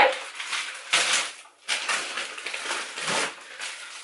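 Plastic and paper food bags crinkling and rustling as they are handled, in two bursts with a short break between them.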